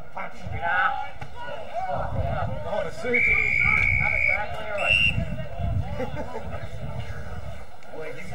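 Umpire's whistle: one long steady blast of about a second, then a short blast about a second later, over shouting voices of players and onlookers.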